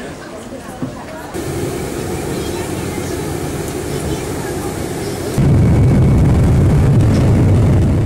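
Airport ambience with indistinct voices, then, about five seconds in, a jet airliner's cabin noise begins: a loud, steady low rumble as the plane rolls along the ground.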